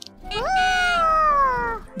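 A single long, high, meow-like vocal call that rises briefly and then slides slowly down in pitch, lasting about a second and a half.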